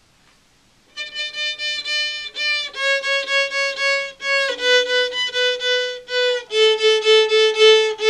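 Violin bowed in short repeated strokes, several on each note, stepping down through four notes from about a second in: a descending practice exercise.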